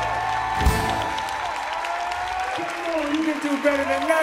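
A band's final chord ringing out, cut off by a drum hit just under a second in, then audience applause and cheering.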